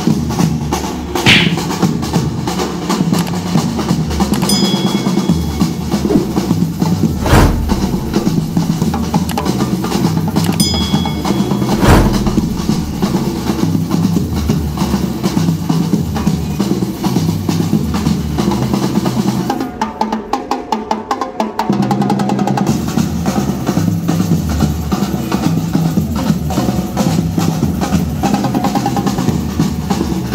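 Marching drum line playing a steady groove: bass drums struck with mallets and snare drums with sticks. About twenty seconds in the bass drums drop out for two or three seconds, leaving fast snare strokes, before the full line comes back in.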